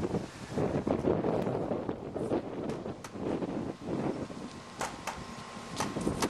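RipStick caster board rolling on a concrete driveway: an uneven rolling rumble with a few sharp clicks, mixed with wind buffeting the microphone.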